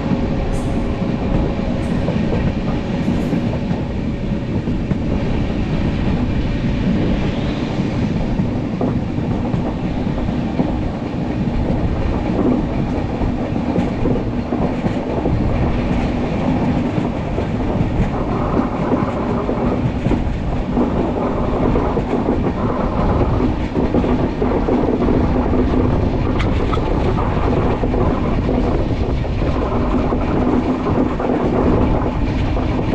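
Passenger train coach running at speed, heard from beside an open window: a steady rumble of wheels on the rails with a faint hum and a few brief clicks.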